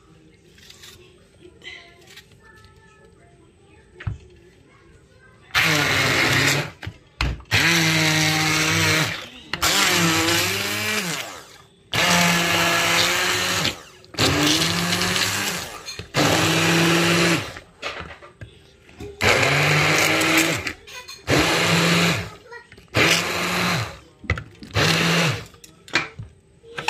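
Hand-held immersion blender run in about ten short pulses, starting about five seconds in, each a second or two long with the motor whine rising as it spins up, puréeing tomato into a herb paste.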